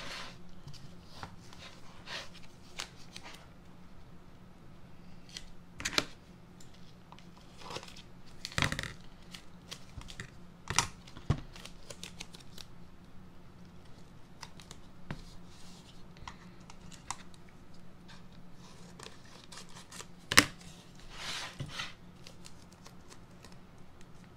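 Blue painter's tape being pulled, torn and pressed along the edges of a wooden box frame, heard as scattered short rips and rustles with light knocks of the frame on the mat. The sharpest knock comes about twenty seconds in.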